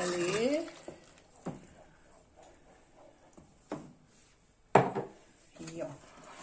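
Wooden spoon and ceramic jug knocking against a stainless-steel pot while the last of a blended soup is emptied in: three sharp knocks spread over a few seconds, the loudest near the end.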